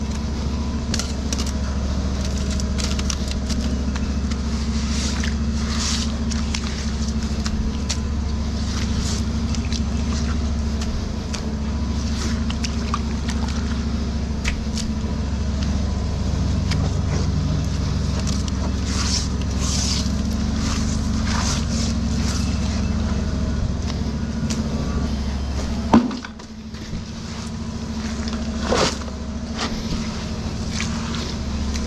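A drain jetter's engine runs with a steady low drone. Short scrapes and crackles of wet roots and debris being handled sound over it. About 26 seconds in there is a sharp knock, and the lowest part of the hum briefly drops away.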